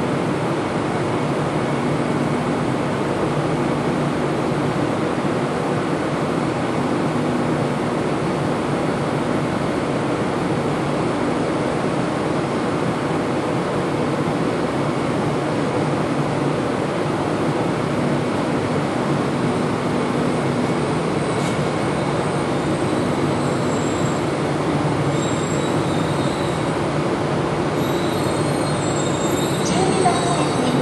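Steady machinery hum of a standing E1 series Shinkansen under a station train shed, while an E4 series Max double-decker Shinkansen rolls slowly into the platform. Faint high wheel and brake squeals come in over the last ten seconds or so as the arriving train slows to its stop.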